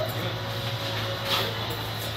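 Steady low mechanical hum, with a brief faint voice about one and a half seconds in.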